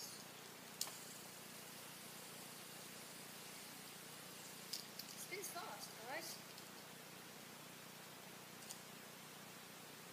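Quiet room hiss with a few small clicks as a fidget spinner is handled: one just under a second in, a cluster around five seconds, and one near the end. A brief soft child's vocal sound comes around five to six seconds.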